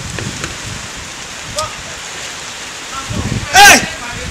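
Steady hiss of rain falling, with a short high-pitched yell near the end that is the loudest sound.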